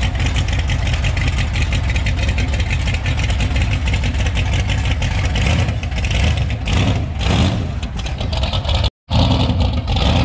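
A 1955 Chevy's engine running loud through its exhaust as the car pulls slowly away, rising and falling with a few throttle blips in the second half. The sound drops out for an instant near the end.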